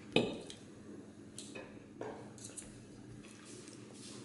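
Knife and fork cutting sausage on a ceramic dinner plate: a few faint, short clinks and scrapes of cutlery against the plate.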